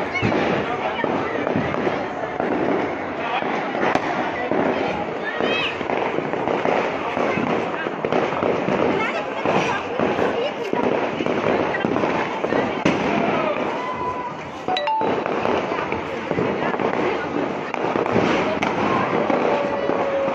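Firecrackers going off in a dense, continuous run of crackles and pops, with people's voices mixed in.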